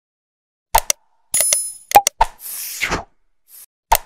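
Animated subscribe-button sound effects: after a moment of silence, two sharp pops, a quick bell-like ding, a few clicks and a whoosh, then clicks as the jingle starts over.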